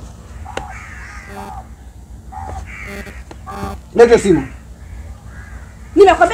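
A woman's raised voice, shouting and wailing in drawn-out, hoarse cries, with a loud falling cry about four seconds in.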